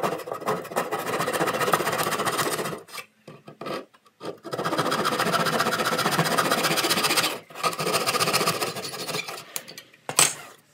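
Hand saw cutting into wood with quick back-and-forth strokes, in three long runs with short pauses about three seconds and seven and a half seconds in. It is cutting notches at the back corners of a drawer box to clear the drawer slides.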